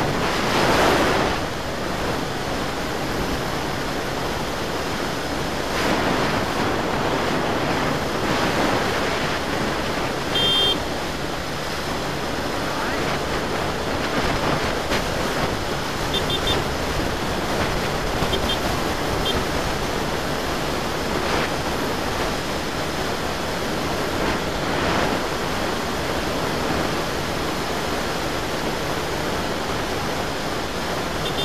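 Wind rushing over the microphone of a camera riding on a motor scooter at road speed, a steady noise that swells several times. A few short high beeps come around the middle.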